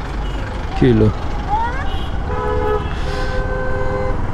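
Vehicle horns honking in street traffic over the steady rumble of a motorcycle's engine and road noise. A short horn sounds about two and a half seconds in, then a longer held horn starts near the end.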